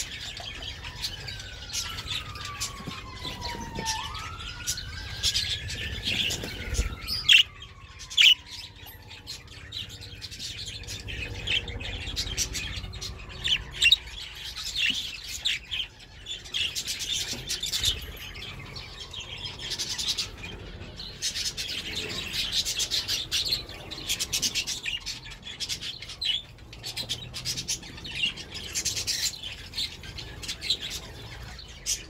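A flock of budgerigars chattering and chirping continuously, with a few sharp knocks about seven, eight and fourteen seconds in. Behind them a siren wails faintly, rising and falling slowly, and fades away by about halfway.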